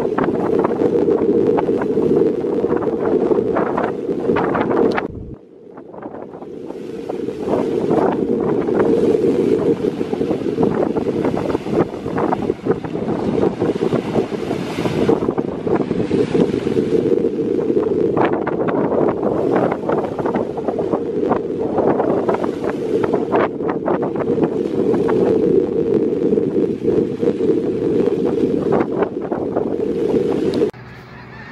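Strong wind buffeting the microphone with a heavy low rumble, over choppy waves washing in against a shore piled with driftwood logs. The sound drops away briefly about five seconds in, then returns.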